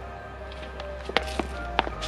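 Background music with a steady low bass. Two sharp clicks come a bit over a second in and near the end.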